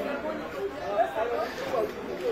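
People talking indistinctly: a mix of voices with no clear words.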